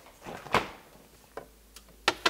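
Refrigerator door pulled open, its seal letting go with a short soft whoosh about half a second in, followed by two light clicks.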